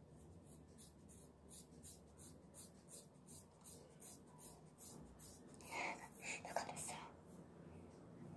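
Scissors snipping through a thick ponytail in quick repeated cuts, about three a second, faint, with a louder crunching cluster about six seconds in.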